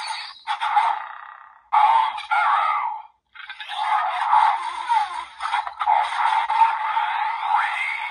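Desire Driver toy belt's small speaker playing its Arrow Raise Buckle sequence: electronic sound effects and a recorded voice calling "Armed Arrow", then "Ready, Fight!" near the end. The sound is thin and tinny, with no bass, and drops out briefly just past three seconds.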